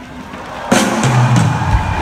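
Live rock-pop band in an arena: the sound swells up, then the full band comes in with a loud drum hit about two-thirds of a second in, followed by heavy bass notes and kick-drum strokes near the end.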